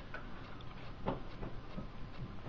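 A few faint, irregularly spaced clicks over a steady low hiss, the clearest about a second in.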